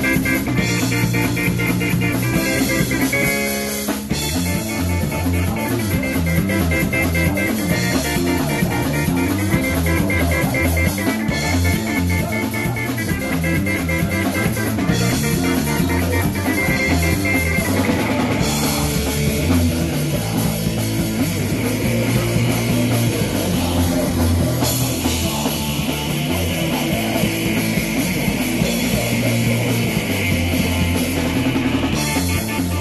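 Live rock band playing loud: electric guitar and drum kit, with a brief break about four seconds in and a heavier cymbal wash from about eighteen seconds in.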